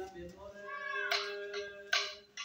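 Voices chanting: one note held steady while another voice rises and falls in pitch, with a short sharp sound at the end.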